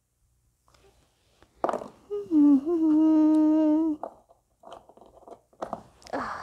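A child humming one held note for about two seconds, with a slight dip in pitch at its start. A few faint clicks follow near the end.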